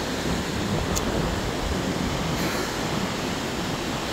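Ocean surf breaking and washing up a sandy beach, a steady rushing wash, with wind buffeting the microphone.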